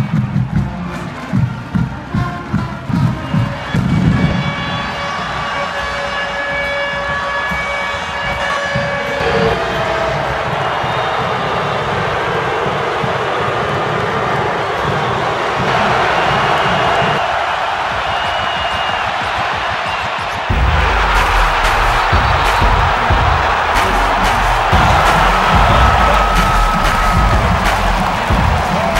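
Marching band drumline beating, then the band's held brass chords over a large stadium crowd cheering, the cheering swelling about halfway through. About twenty seconds in, music with a heavy low beat cuts in suddenly over the crowd.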